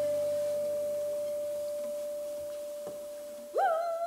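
A single pure ringing tone, struck once, held and fading slowly and evenly. It is the dying note at the end of a folk band's piece. About three and a half seconds in, a high, louder note with a wavering pitch comes in.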